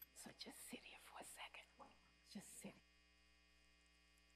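Near silence: faint, murmured voices for the first three seconds or so over a steady electrical mains hum, then only the hum.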